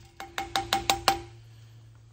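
Rawhide mallet striking a copper strip on a steel tinner's stake, about six quick strikes in just over a second, each with a short ringing tone, as the strip's edge is hammered over into a fold. The strikes stop a little past a second in.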